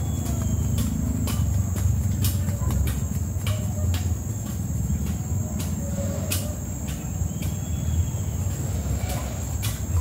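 Insects shrilling steadily on one high note over a low, even rumble, with scattered light clicks and taps, likely the resin brush against its bowl and the hull.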